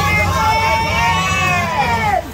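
A woman's drawn-out excited call, like a long "come on", over the babble of a small crowd and a steady low hum.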